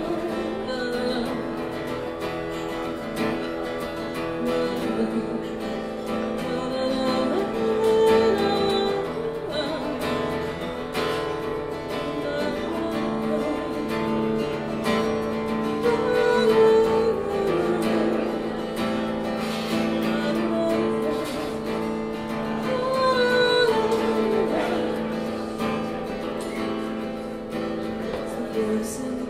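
A solo singer strumming an acoustic guitar and singing a folk song live.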